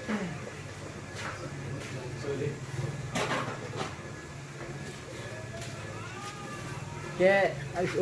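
Steady low hum of a 12-volt battery-powered popcorn machine's stirring motor while the oil heats, with a few short clicks and voices in the background.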